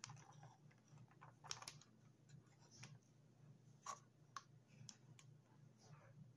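Faint, scattered clicks and light taps of a wooden chopstick against a plastic ziplock bag and bottle while scooping sticky persimmon paste, irregular and a few at a time, with the sharpest ones around the middle.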